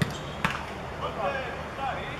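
Two sharp thuds of a football being struck, about half a second apart, followed by players' voices calling out.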